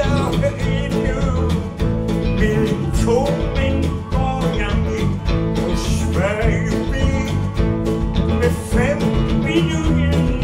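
Live band playing an instrumental passage in a country-blues style, with electric and acoustic guitars, drums, bass and keyboards, and a lead line of bending notes over a steady beat.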